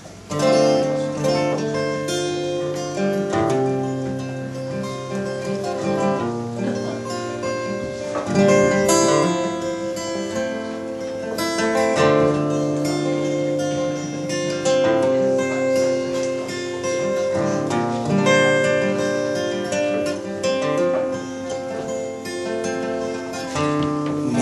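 Solo acoustic guitar playing the slow instrumental intro to a song, notes ringing and changing every second or two while one higher note keeps sounding above them.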